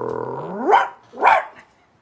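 A man imitating a dog: a low growl that rises into a bark, followed by a second, shorter bark.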